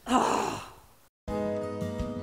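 A woman's loud, breathy, exasperated sigh lasting about half a second. A brief silence follows, then music starts with steady held notes.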